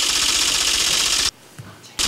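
A loud, rapid rattling sound effect from the show's segment-transition sting. It cuts off suddenly about a second and a quarter in.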